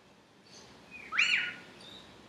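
A bird calls once loudly about a second in, a short note that rises sharply, holds and then drops. Fainter short chirps come before and after it.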